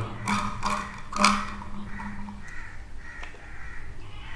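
Several short, harsh bird calls in the background, preceded by a few brief knocks and rustles of handling.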